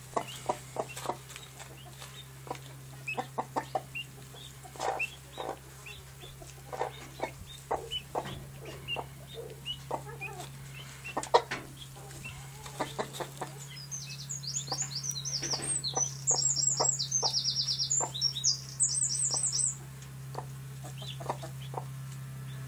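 Mother hen clucking softly and repeatedly to her chicks. From about two-thirds of the way in, chicks peep in quick high runs for several seconds, over a steady low hum.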